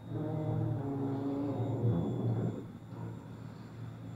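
Gondola station machinery: a steady low hum, with a louder, pitched mechanical drone over it for the first two and a half seconds that then dies away.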